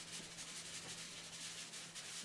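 Fingertips rubbing fluorescent chalk into the drawing surface, a faint dry scuffing as the chalk's edges are softened and blended, over a faint steady low hum.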